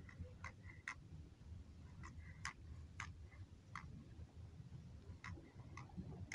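Faint, sharp clicks at an irregular pace of one or two a second, over a low steady rumble.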